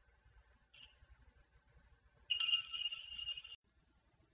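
Faint room tone with a brief high electronic blip about a second in, then a steady chime-like electronic tone of several held pitches that lasts about a second and stops abruptly.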